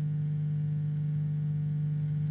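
Steady electrical mains hum: an unchanging low buzz with one strong tone and fainter evenly spaced overtones above it.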